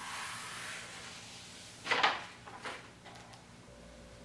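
Adhesive vinyl wrap sheet and its paper backing rustling as the backing is peeled away, with a sharper crinkle about two seconds in and a smaller one just after.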